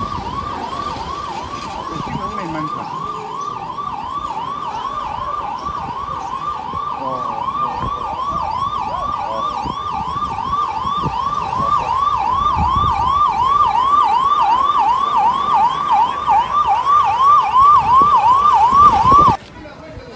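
Vehicle siren in a fast yelp, its pitch sweeping up and down about two and a half times a second, growing louder and then cutting off suddenly near the end.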